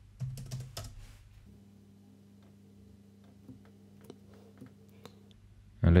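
Computer keyboard typing: a short run of key presses in the first second, then a few scattered single key clicks over a faint steady low hum.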